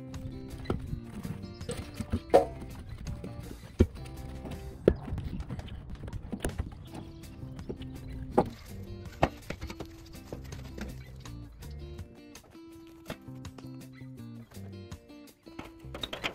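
Background music over a scatter of sharp, irregular wooden knocks: short lengths of dried maple branch clunking against each other and the steel drum as they are packed in.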